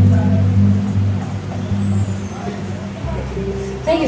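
Live band holding a low sustained chord that fades over about three seconds, then shifts to a lower bass note with a steady higher tone, before the band comes back in sharply at the very end.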